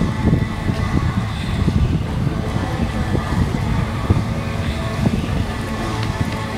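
Wind buffeting the microphone, a steady uneven low rumble, with faint steady high tones behind it.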